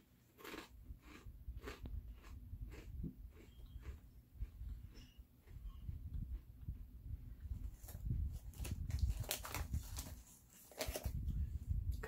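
A person chewing thin, crispy Cheez-It Snap'd crackers close to the microphone: a run of crisp crunches, several a second.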